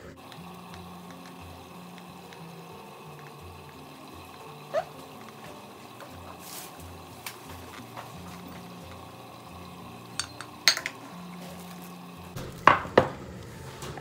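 Hot fruit sauce poured from a metal pot onto a pudding in a glass baking dish and spread with a spatula: quiet pouring and scraping, broken by a few sharp clinks of metal on pot and glass. The loudest clinks come near the end.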